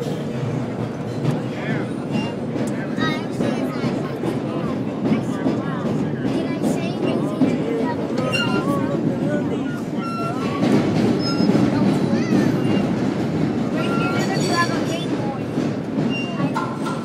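Vintage R1/R9 subway cars running through a tunnel: a steady loud rumble of wheels on rail, with short high squeaks scattered throughout that come from the hand grab being held.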